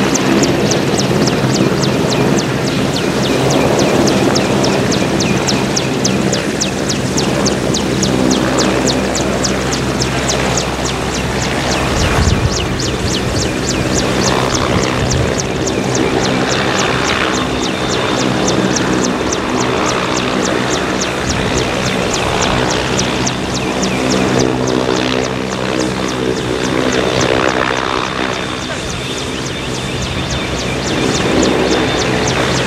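A JMSDF MCH-101 (AW101 Merlin) helicopter running on the ground with its rotors turning. A steady turbine whine runs under the fast, even beat of the main rotor.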